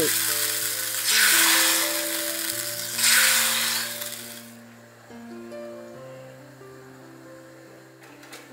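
Hot oil and fried shallots poured from a small pan onto a pot of curry, sizzling in three surges that die away about halfway through. Background music with long held notes plays throughout.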